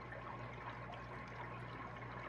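Faint, steady trickling and bubbling of aquarium water from running tanks and their air system, under a low steady hum.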